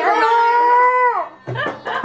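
A single howl-like held note, about a second long, that glides up at its onset and down as it ends. Outro jingle music with a steady drum beat starts about one and a half seconds in.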